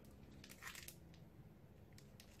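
Near silence, with a brief faint rustle or scratch of an item being handled about half a second in.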